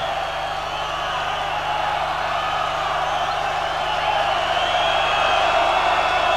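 A huge concert crowd cheering and shouting after a song, the noise swelling slightly.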